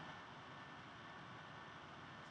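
Near silence: faint room tone with a steady hiss.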